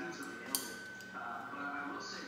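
A voice and music in the background, with a single sharp click about half a second in.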